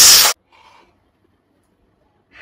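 A sudden, very loud, harsh scream lasting about a third of a second, distorted and cut off abruptly.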